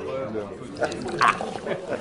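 Chatter of a small group of people talking over one another, with short overlapping voices and no single clear speaker.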